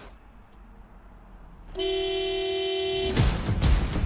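A car horn sounds one long, steady note for just over a second, following a quiet moment after a crash of cars, and cuts off abruptly. Music comes in right after it.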